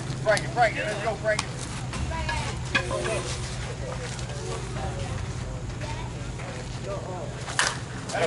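Softball field sound: faint distant players' voices over a low steady hum, with a few short sharp knocks. Near the end comes one sharper crack, a slowpitch bat hitting the softball.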